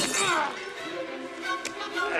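Film fight soundtrack: a sharp crash right at the start, then a person's cry falling in pitch, giving way to held tones of background music.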